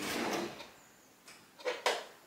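Kitchen handling noise: two short knocks close together near the end, from utensils or containers being picked up.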